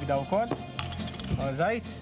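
A couple of sharp knocks from food preparation on a wooden chopping board, over a background music bed with brief snatches of voice.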